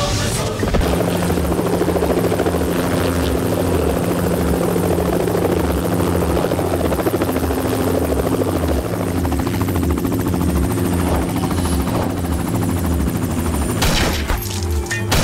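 Light helicopter running close by, starting about a second in: the rotor blades give a rhythmic low chopping over a steady engine whine and rushing air.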